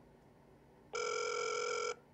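A single electronic beep from a phone call, about one second long, heard over the phone's speakerphone.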